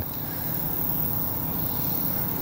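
Steady outdoor background noise with a faint low hum and no distinct event.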